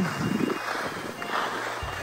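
Skis sliding over soft snow with wind on the microphone: a steady hiss.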